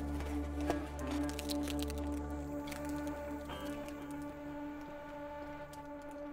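Soft background music with sustained, held chords. Faint clicks and crinkles underneath come from the plastic-wrapped cupcake being handled and bitten.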